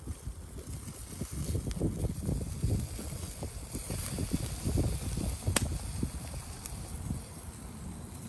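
Gusty wind buffeting the microphone in an uneven low rumble, with one sharp click a little past halfway.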